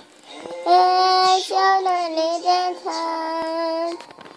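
A three-year-old child singing in a high voice: a short run of drawn-out notes that ends in one long held note.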